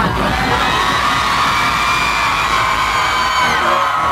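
Live reggaeton concert playback: a bass-heavy beat under a long held, many-layered tone that slowly rises and drops away near the end, with the crowd shouting.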